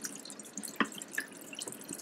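Rinse water being poured out of a plastic film developing tank, a thin stream splashing into a sink, with a few sharp drips.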